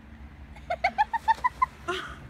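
Gull calling: a quick run of about eight short, sharp calls in the second half, the first ones a little lower in pitch.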